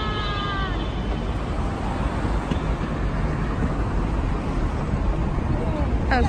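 City street noise with traffic and a heavy low rumble of wind on the phone's microphone. A high tone slides slightly down and fades out about a second in.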